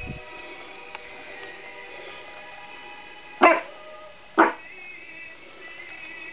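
Small poodle barking twice, about a second apart: her big-dog, Doberman-like 'Dobie' bark.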